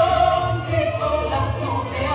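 Recorded music with a choir of voices holding long notes over a pulsing low bass, played over a loudspeaker.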